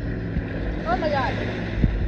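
A duck gives a short run of quacks about a second in, over a steady low motor hum.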